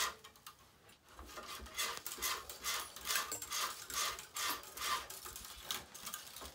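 Tennis string rubbing against the racquet's main strings as a cross string is woven and pulled through: short rubbing strokes, about three a second, starting about a second in.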